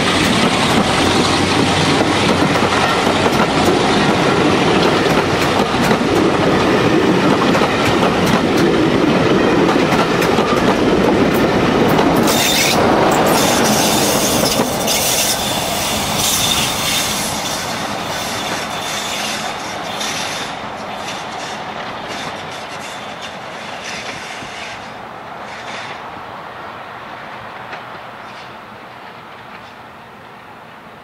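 Heritage diesel-hauled passenger train running past at close range, its coaches' wheels rumbling and clattering on the track. The noise stays loud for the first half, with a thin high wheel squeal from about twelve seconds in, then fades steadily as the train draws away.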